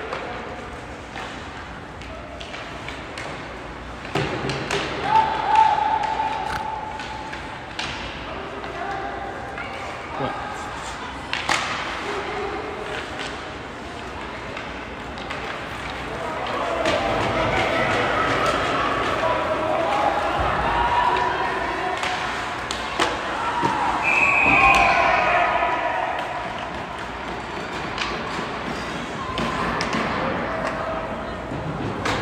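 Ice hockey play in a large, echoing arena: scattered sharp knocks of puck and sticks against the ice and boards, with distant shouting voices of players and spectators that grow busier and louder past the middle.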